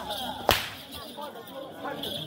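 Thick braided rope whip cracking once, a single sharp crack about half a second in.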